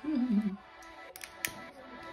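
A brief falling vocal sound at the start, then two light, sharp clicks about a second and a half in from a long-nosed utility lighter being let go and pulled away from the burning tealight.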